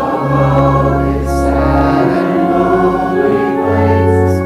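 Congregation singing a hymn to organ accompaniment, the voices carried over sustained organ chords and deep held bass notes.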